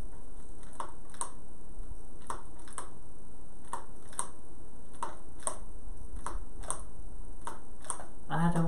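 Faint, sharp plastic clicks in pairs, a pair about every second and a half: the push button of a mini toy lightsaber's light-up piece being pressed down and let go.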